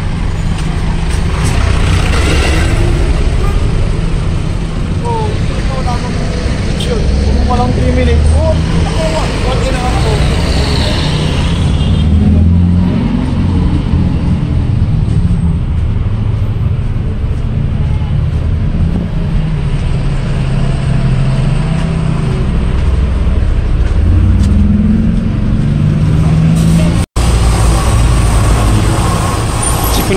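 Street traffic: jeepneys and cars driving past close by, a steady low engine rumble that swells and eases as vehicles pass. The sound cuts out for an instant near the end.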